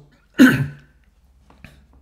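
A man clears his throat with one short, loud cough about half a second in.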